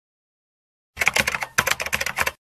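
Computer keyboard typing sound effect: a quick run of key clicks starting about a second in, with a brief break partway through.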